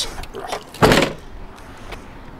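A single car door thump about a second in, on a 2015 Chevrolet Traverse.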